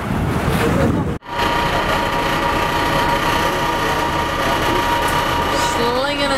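Wind and water rushing past a moving boat for about the first second. After an abrupt cut, a boat's engine drones steadily with a held hum, heard inside the passenger cabin.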